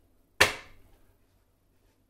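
A plastic screw cap smacked down by the palm onto the neck of a plastic milk bottle: one sharp snap, with a brief ringing tail.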